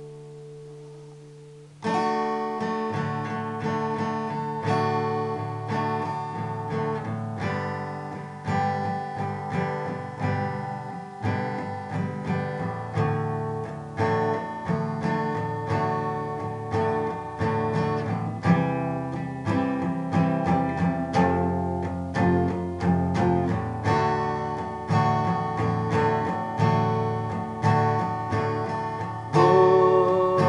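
Acoustic guitar: a chord rings and fades for about two seconds, then rhythmic chord strumming starts and carries on, jumping louder near the end.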